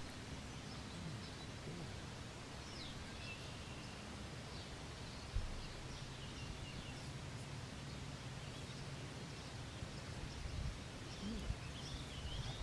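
Steady outdoor background noise with faint bird chirps now and then, and a single soft knock about five seconds in.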